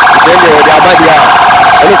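Emergency-vehicle siren sounding in a fast, continuous warble, the loudest sound, as the vehicle passes along the street, with voices talking beneath it.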